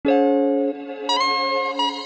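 Instrumental rap beat intro: a melody of held, ringing notes that changes pitch about a second in and again near the end, with no drums.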